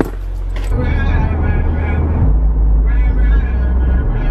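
Steady low rumble of a car driving, heard from inside the cabin, growing heavier about a second in, with a high, wavering voice-like sound over it at times.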